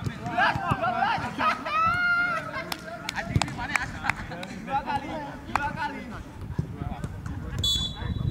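Footballs being kicked and trapped on a grass training pitch, heard as scattered sharp thuds, under players' voices calling out. There is a drawn-out shout about two seconds in, and a brief high steady tone near the end.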